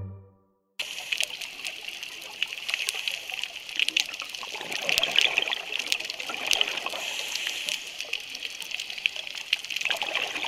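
The last note of the music dies away, and about a second in a steady trickling water sound starts abruptly, full of small crackles and clicks.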